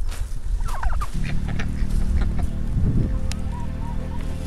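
A domestic turkey gobbling once, a short warbling call a little under a second in.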